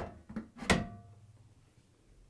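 The washer's top panel being lifted off the cabinet: a couple of soft knocks, then one sharp metallic clank less than a second in that rings briefly.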